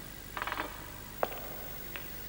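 Cartoon sound effect of metal clock hands: a short jingle of clinks as one is picked from a pile, then two sharp single clicks.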